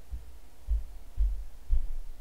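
Low, dull thumps, about four in two seconds and unevenly spaced, over a faint hiss.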